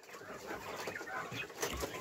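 Caged Texas quail making soft, scattered chirps and clucks.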